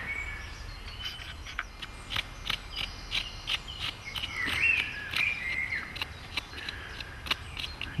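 Small woodland birds chirping, with short high ticks scattered irregularly and a few curving chirps about halfway through.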